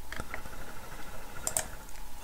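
A few faint clicks of a computer mouse, its scroll wheel and button, three close together at the start and two more about a second and a half in, over low room noise.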